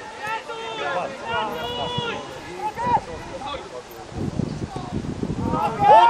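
Players' voices shouting and calling out across an outdoor football pitch, with a loud shout near the end. A low rumble of wind on the microphone fills the second half.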